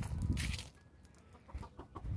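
Chickens clucking in short calls, with a louder low rumble over the microphone in the first half second.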